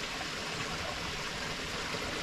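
Spring-fed stream running steadily, an even rush of water.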